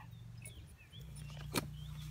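A single sharp pop about one and a half seconds in: the latex glove blown off the glass by the gas from baking soda reacting with vinegar. Under it runs a faint, steady low rumble.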